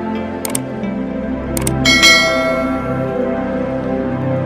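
Background music with a subscribe-button sound effect over it: paired mouse clicks about half a second in and again about a second and a half in, then a bell chime about two seconds in that rings out and fades.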